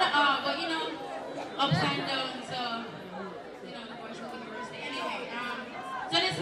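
Speech: voices talking over crowd chatter, with no music playing.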